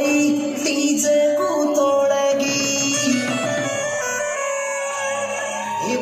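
Music with a voice singing a melody.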